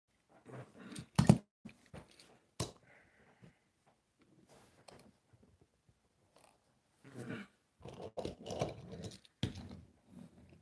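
Close handling noises: a sharp click about a second in, the loudest sound, then scattered knocks, taps and rustling as a small toy engine is picked up and set down on the table and the camera tripod is shifted.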